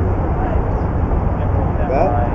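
Steady low wind rumble buffeting the microphone, with faint traces of a voice.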